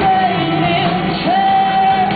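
A rock band playing live: electric guitars and band under a high sung vocal that holds long notes, with a short dip in pitch in the middle.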